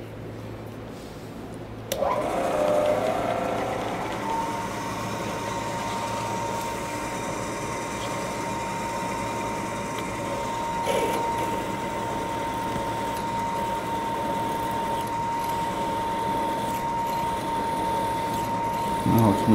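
Vertical milling machine's spindle starting about two seconds in, then running steadily with a steady whine while a quarter-inch drill bit drills into a metal plate.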